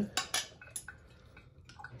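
A few light clinks of a metal utensil against a jar in the first second, then faint scraping as it starts stirring the separated oil back into natural creamy peanut butter.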